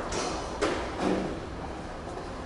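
Long metal spoons stirring a thick grain mash in stainless steel brew pots, scraping and knocking against the pot walls: a few scrapes, with a sharper knock just over half a second in and another about a second in.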